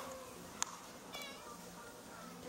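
A cat's short, high-pitched meow about a second in, just after a single sharp click.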